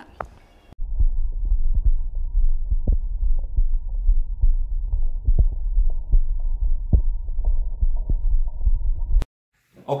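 A young boy's heartbeat recorded through a Stemoscope digital stethoscope on its 20–1000 Hz filter and played back: a run of regular, dull heart sounds with nothing above the filter's range. It starts about a second in and cuts off suddenly near the end.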